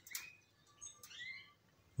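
Canaries chirping faintly: a few short, curved call notes, one near the start and another pair about a second in.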